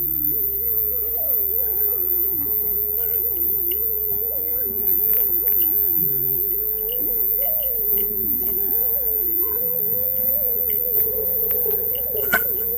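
Ambient electronic music: a single wavering tone that slides up and down in the middle register over low held notes.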